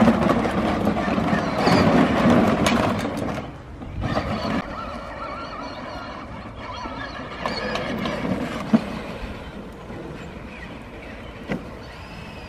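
Power Wheels Kawasaki ride-on ATV driving on its new 12-volt 18Ah sealed lead-acid battery: electric drive motors and gearboxes whining as the plastic wheels roll. Louder and wavering in pitch for the first few seconds, then quieter and steadier as it moves off across the grass, with a few light clicks.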